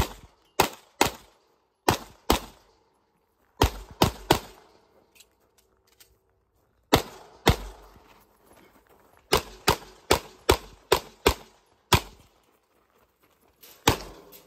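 Pistol shots fired in pairs and quick strings of three to five during a timed IDPA stage, about sixteen sharp cracks in all, with short silent gaps where the shooter moves to the next position.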